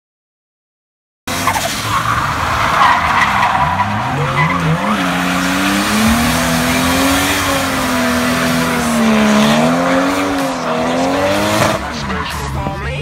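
Nissan Skyline R33's RB25 straight-six revving up and down in a drift while the rear tyres squeal and spin, starting about a second in after silence.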